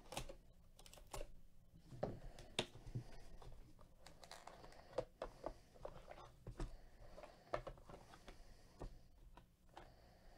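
Cardboard packaging being handled: irregular faint clicks, taps and light rustling as a sealed card hobby box is slit open and the boxed packs inside are lifted out.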